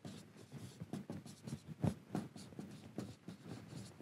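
Marker writing on a whiteboard: a quick, uneven run of short strokes, one louder than the rest a little before the middle.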